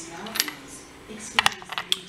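A few sharp, light metallic clicks: brass lock parts being handled and set down on a wooden pinning tray. One click comes about half a second in, and a quick cluster of clicks comes near the end.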